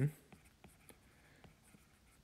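Faint, irregular light ticks and scratches of a stylus writing on a tablet screen.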